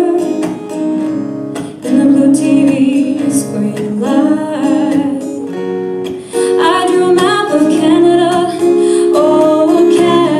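A woman singing with vibrato while strumming an acoustic guitar, performed live.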